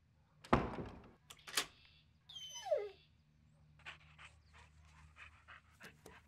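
A door shuts with a thud about half a second in, followed by two sharp clicks of its latch. Then a dog gives one short falling whimper, and light ticking steps follow on wooden floorboards.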